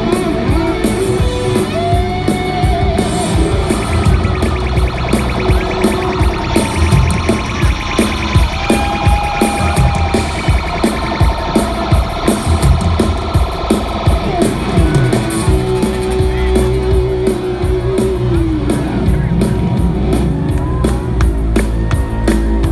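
Live rock band playing at full volume, with an electric guitar solo of bending, sliding notes over driving drums and bass. Near the end the guitar holds one long note and slides it down.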